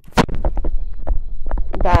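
Stylus writing on a tablet screen, a quick run of low thumps and taps.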